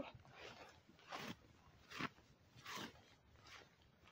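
Faint strokes of a hard brush swishing through a horse's long tail hair, four strokes a little under a second apart.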